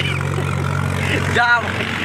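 A steady low hum that cuts off suddenly about one and a half seconds in, as a man gives a short burst of laughter.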